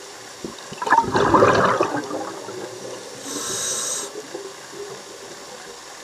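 Scuba diver's regulator breathing underwater: a loud gurgling gush of exhaled bubbles about a second in, lasting about a second, then a short hiss of inhalation through the regulator a little after three seconds.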